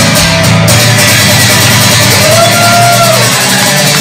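Solo acoustic guitar strummed steadily at the close of a song, with a voice holding one long note that rises and falls about two seconds in.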